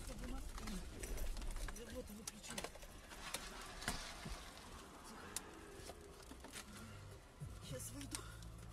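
Faint, indistinct voices inside a car's cabin, with scattered small clicks and a steady low hum.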